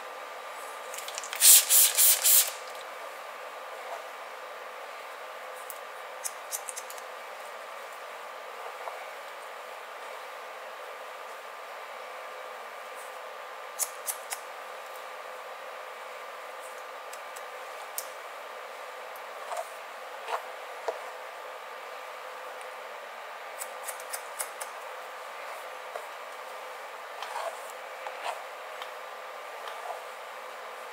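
A spray bottle spritzes water onto wet hair four times in quick succession about two seconds in. Haircutting scissors and a comb follow, working through the wet hair in scattered short snips and clicks. A faint steady hum runs underneath.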